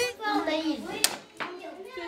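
A mallet strikes nuts on a wooden block to crack them, twice: once at the start and again about a second in. Children's voices come between the strikes.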